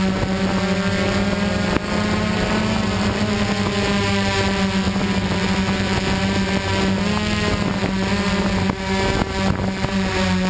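DJI Flame Wheel F550 hexacopter's brushless motors and propellers in flight, a steady buzzing hum heard from the camera on board, its pitch wavering a little as the craft manoeuvres.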